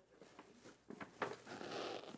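Tissue paper and a paper gift bag rustling and crinkling as a present is unpacked, with a few sharp crackles about a second in.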